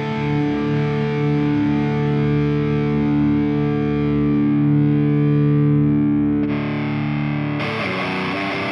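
Distorted electric guitar played through an ENGL E646 amp-simulator plugin: one chord held and ringing out for several seconds, its treble slowly fading. Near the end the tone turns brighter as the rig switches to a Diezel Herbert lead preset, with no dropout in the sound.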